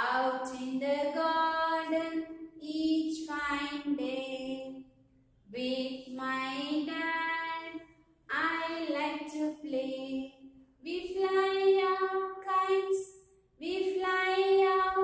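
A woman singing a simple children's action rhyme unaccompanied, in about five short phrases with brief breaths between them, the last ending on a long held note.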